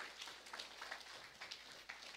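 Quiet pause: faint room tone with a few scattered soft ticks.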